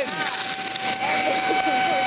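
Shark APEX UpLight vacuum running with a steady high whine while its crevice tool sucks up crackers from a tabletop.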